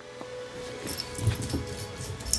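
A small dog getting down and moving off on carpet: soft thumps of its landing and footfalls about a second in, with light jingling of the tags on its harness.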